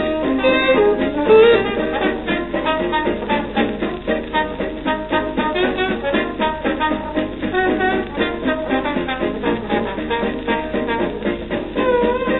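Instrumental passage of a 1934 hot jazz dance-band recording on a shellac 78 record, with the brass and saxophones leading over a steady beat.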